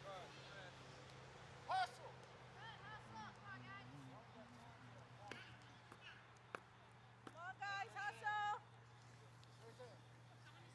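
Faint, distant shouts and calls of players and spectators across a soccer field. The loudest come as a short call about two seconds in and a run of held calls near the end, over a steady low hum.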